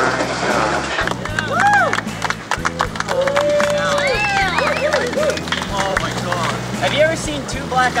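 A group of young men whooping and cheering in drawn-out, rising-and-falling calls, one held long about three seconds in, over background music with a steady bass line.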